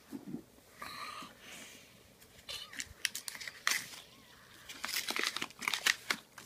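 Close crinkling and crackling of something being handled, thickening into a quick run of sharp crackles from about two and a half seconds in. A brief vocal sound comes about a second in.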